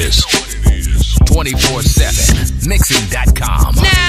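Hip-hop music: a rapped vocal over a heavy, steady beat.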